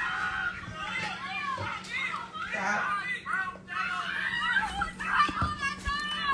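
Several excited, high-pitched voices chattering and calling over one another, played back from a video on a laptop, with a steady low hum underneath.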